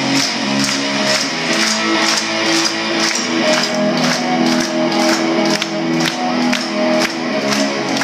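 Live rock band playing: electric guitars and bass holding notes over drums, with a steady beat of sharp hits about two to three times a second, in a large room.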